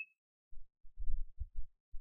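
Computer keyboard typing, heard as a handful of soft, dull keystroke thumps with no click to them.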